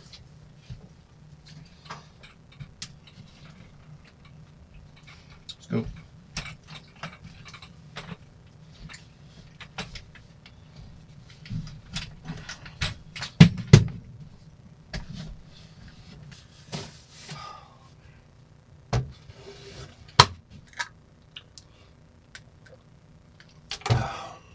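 Scattered knocks, clicks and rattles of things being handled in a small camper interior, including a folding chair's frame being moved, with the loudest pair of knocks about halfway through. A steady low hum runs underneath.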